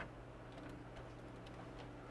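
Quiet steady low hum with a light click at the start and a few faint ticks, from handling small equipment being set in place.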